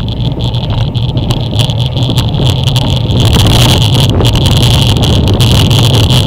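Wind rushing over a bike-mounted action camera's microphone while riding at speed, a loud, steady rumble that gets a little louder about three seconds in.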